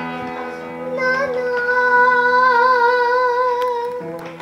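Grand piano accompaniment, then about a second in a young girl starts singing, holding one long wavering note with vibrato over the piano.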